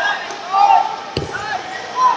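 One sharp thud a little over a second in as two heavyweight (125 kg) wrestlers go down onto the wrestling mat in a takedown. Shouting voices echo around a large hall.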